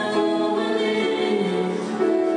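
Music with a group of voices singing together in long held notes.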